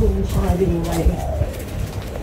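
A dove cooing, its low, steady coos in the first half, with a man talking over it.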